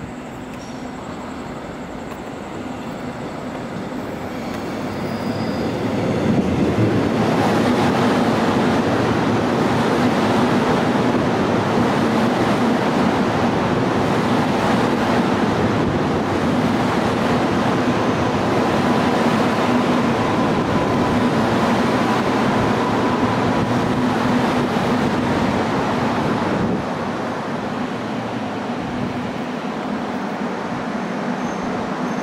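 Korail electric multiple-unit train on the Gyeongui-Jungang Line approaching and running past close by. It grows louder over the first several seconds, then holds a loud, steady rumble of wheels and motors with a low hum, and drops off sharply a few seconds before the end.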